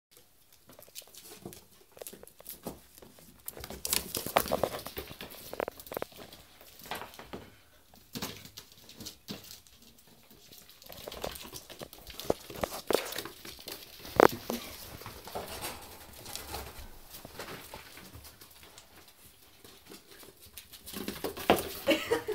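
A ferret and a cat scuffling on the floor: an irregular patter of paws and claws with scattered bumps and knocks, busiest about four seconds in, with one sharp knock about fourteen seconds in.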